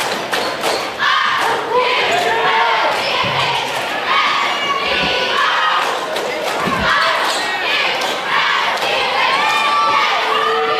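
A basketball bouncing on a hardwood court with a few dull thuds, under the shouts and chatter of players and spectators.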